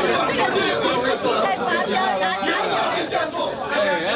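Men arguing heatedly, their voices overlapping.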